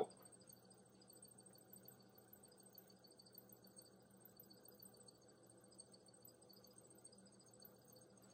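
Near silence: only the faint steady hum of an electric potter's wheel motor turning.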